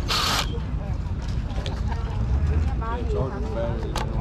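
Ryobi cordless drill triggered briefly, a short burst of motor and gear noise at the start, then handling of the drill with a sharp click near the end.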